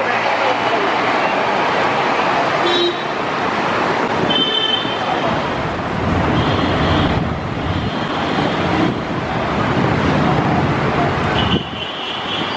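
Heavy city road traffic with buses running past, a steady loud din, broken by several short vehicle horn toots, the last near the end.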